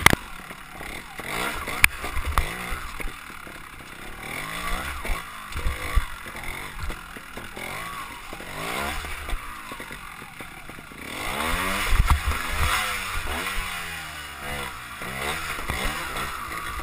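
Trials motorcycle engine revving up and falling back over and over as the bike climbs through a rocky stream bed, the loudest burst of throttle about twelve seconds in, with a few sharp knocks of the wheels on rock.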